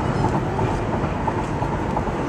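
Steady road noise of a car driving along, heard from inside the cabin: tyres and engine making an even, unbroken rumble.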